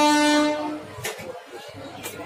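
A train horn's long, steady blast, heard from inside a passenger coach, cuts off under a second in. Quieter coach noise follows.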